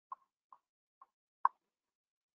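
Four short, light clicks of a computer mouse, about half a second apart, the last one the loudest.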